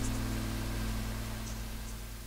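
The last chord of a song played back from cassette, dying away into steady tape hiss, with a few faint high ticks.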